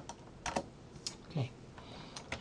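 A few separate keystrokes on a computer keyboard, about half a second apart, as a command is finished and entered.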